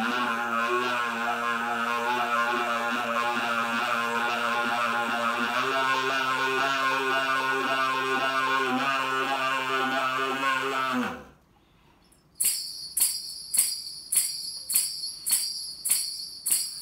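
Soprano saxophone with a toy kazoo attached to its neck, sounding one long held tone: a steady low note under shifting upper notes, the low note stepping up about a third of the way in. It stops about eleven seconds in. After a short pause a foot tambourine starts jingling about twice a second.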